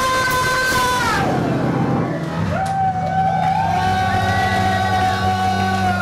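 Live band music: a long held high note with strong overtones slides down in pitch about a second in, then another long held note sounds over a steady low drone from about two seconds in.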